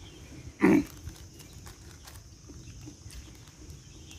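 One short, loud throaty sound from a person eating, about half a second in, grunt- or burp-like. Faint scattered clicks of chewing and handling follow.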